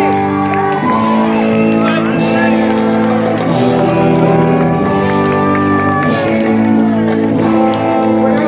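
Live rock band playing in a large hall, with electric guitar chords held and ringing and the chord changing every second or so.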